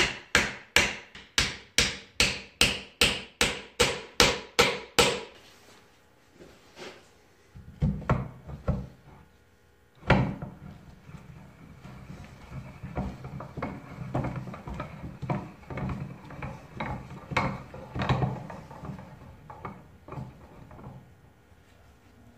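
A hammer striking pins into a wooden press arm, quick even blows about two and a half a second for about five seconds. After a knock about ten seconds in, a steel threaded rod is spun by hand through the press's top beam, a quieter, uneven low rubbing.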